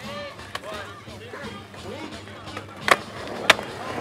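Skateboards on a concrete skatepark, with two loud sharp board impacts about half a second apart near the end, over crowd voices.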